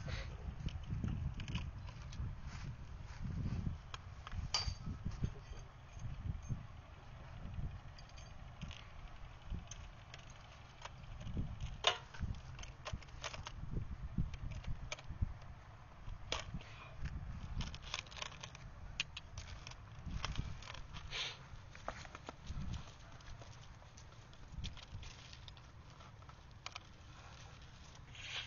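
Cloth rustling with scattered small clicks and knocks as items are pulled out of a motorcycle's storage space, over a low, steady rumble.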